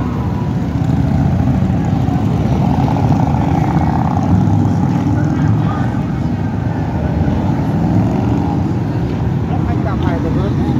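Engines of a long column of motorcycles, many of them large touring bikes, passing one after another in a steady, loud, low sound.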